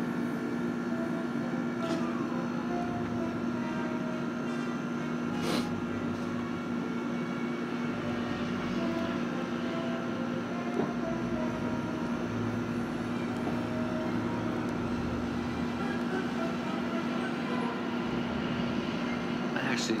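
A steady low machine hum at an unchanging pitch, with faint short tones now and then and a single click about five and a half seconds in.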